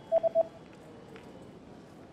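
Three quick electronic beeps at one pitch, a cartoon sound effect as the multiple-choice answer buttons pop onto the screen.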